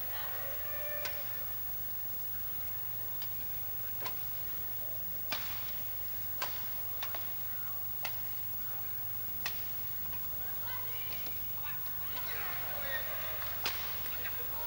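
Sharp clicks of badminton rackets striking the shuttlecock in a rally, irregularly about a second apart, over a low steady hum. Crowd noise swells near the end.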